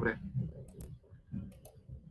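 Computer mouse clicks: two quick double-clicks, one a little under a second in and another about a second and a half in.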